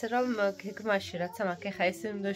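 Speech only: a person talking continuously.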